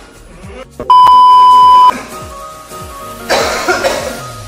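A loud, steady bleep tone lasting about a second, edited in over background music with a repeating falling bass line. Near the end there is a short rough burst of noise.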